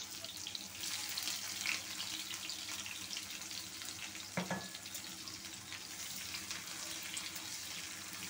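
Sliced onions frying in hot oil in a kadai: a steady sizzle scattered with small crackles.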